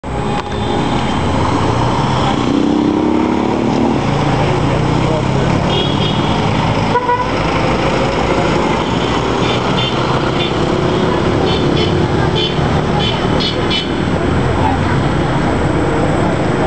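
Busy city street traffic: vehicle engines running and passing, with short car-horn toots sounding several times, mostly in the second half, over people talking.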